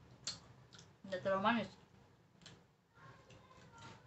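A woman's short wordless 'mmm' with a rising-then-falling pitch about a second in, with a few sharp clicks around it.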